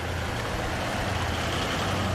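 Toyota Land Cruiser SUV running as it drives off: a steady low engine hum under a broad, even hiss.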